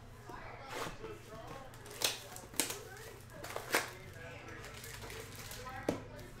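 Cardboard trading-card hobby box being opened by hand, giving a series of sharp cardboard snaps and taps. The loudest are about two, two and a half and three and three-quarter seconds in, with another just before the end.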